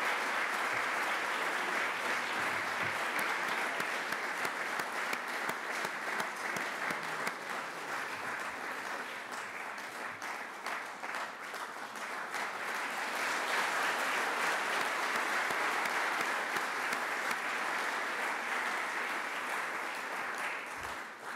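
A roomful of seated dinner guests applauding, steady sustained clapping that starts suddenly and swells again about halfway through.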